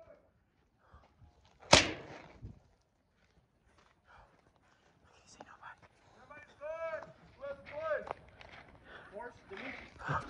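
A single sharp, loud crack about two seconds in, followed by a couple of fainter clicks; from about six seconds in, voices call out.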